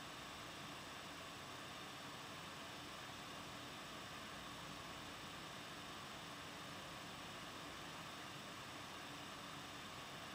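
Steady, even hiss with a faint hum, nothing else: the recording's background noise, a low room tone.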